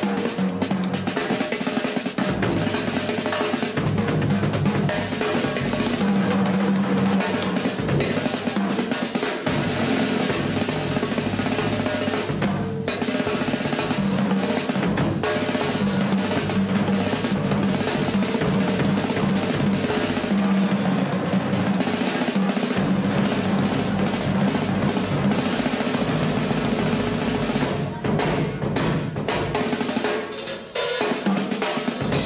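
A drum kit solo on a Ludwig kit: an unbroken run of snare rolls and drum strokes with bass drum and cymbals, with a brief let-up near the end.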